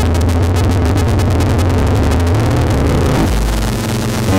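Eurorack modular synthesizer playing a dense, distorted electronic sequence with a fast rhythmic pulse over low bass notes. About three seconds in the rhythm falls away, leaving a low, noisy, distorted drone.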